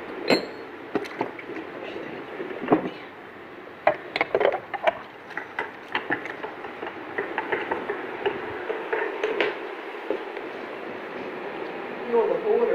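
Steady indoor room noise with scattered clicks, knocks and light clinks of objects being handled or brushed against, a few sharper knocks a quarter-second in, near three seconds and around four to five seconds.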